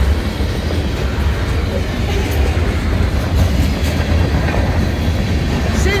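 CSX freight train's covered hopper cars rolling past close by: a steady low rumble of steel wheels on the rails, with occasional faint clicks.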